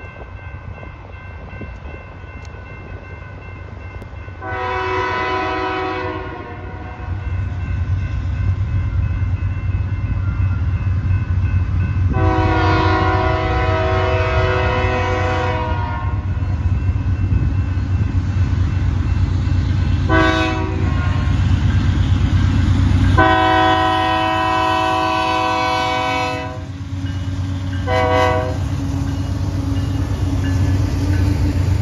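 Canadian Pacific freight train led by GE AC44CWM and AC4400CW diesel locomotives sounding its air horn for a grade crossing: two long blasts, a short one, a long one, then a brief final toot. Under the horn the rumble of the locomotives grows louder as they come up and pass close by near the end.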